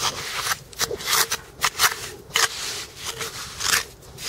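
Crackling, crunching rustle of wet rockweed and beach gravel being dug through by hand, a run of irregular short crackles.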